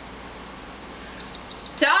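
Workout interval timer beeping twice, two short high beeps a little over a second in, signalling the end of a 45-second exercise interval.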